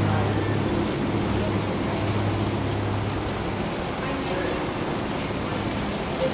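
Street traffic noise with a vehicle engine's low steady hum, which fades out about halfway through; faint voices in the background.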